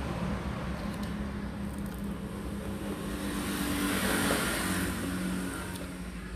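Background traffic: a passing vehicle's rush of noise swells to a peak about four seconds in and fades again, over a steady low hum.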